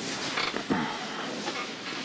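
An injured man groaning in pain, a few short low vocal sounds with breath.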